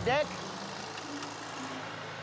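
Exmark Lazer Z zero-turn riding mower engine running steadily, a constant low hum.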